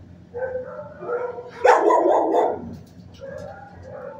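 Dog barking: two shorter pitched barks in the first second or so, then one loud bark about a second long near the middle.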